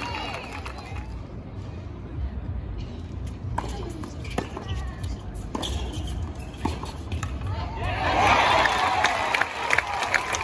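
Tennis balls struck by rackets in a rally, four sharp pops roughly a second apart. From about eight seconds in, a crowd cheers and claps as the point ends.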